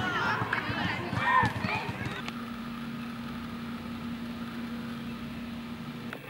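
Young people's voices calling out at play for about the first two seconds, then a steady low hum takes over.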